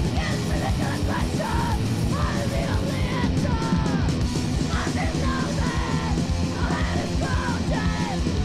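Hardcore punk song: continuous shouted vocals over a loud, dense full band.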